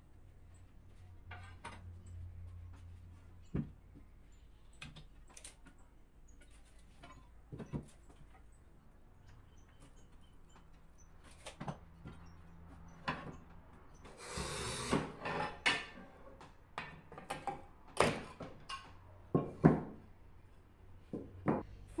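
Pieces of ceramic tile being handled and set down on a table: scattered light clicks and knocks, a short scraping noise about two-thirds of the way in, and two sharper knocks near the end.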